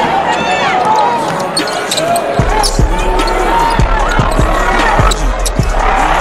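Basketball game sound: sneakers squeaking on the hardwood court and a ball being dribbled over crowd voices, with a deep bass beat coming in about two and a half seconds in.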